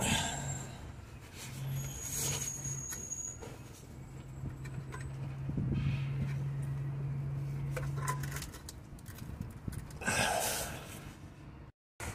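A ratchet with a crow's foot spanner is being forced against a seized fuel vaporizer fitting under a van, which won't undo. Scattered tool clicks and handling scrapes sound over a steady low hum that stops about two-thirds of the way through, then a short rustle near the end.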